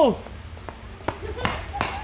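The falling tail of an exclaimed 'wow' at the start, then a few faint irregular taps and clicks.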